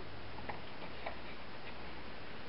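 Quiet room tone with a few faint, light ticks as paper accordion rosettes are moved about on a table.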